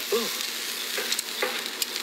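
Food sizzling on a barbecue grill: a steady hiss with scattered small crackles and pops.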